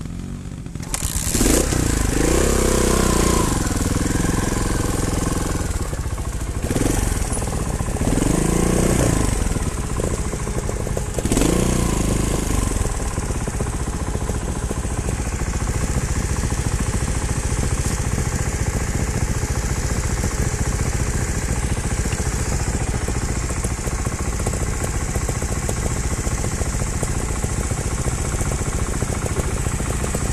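Trials motorcycle engine revved up and back down three times in the first dozen seconds, then running steadily at idle for the rest.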